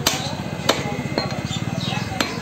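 A heavy butcher's cleaver chopping beef on a wooden log chopping block: about four sharp chops, roughly half a second apart.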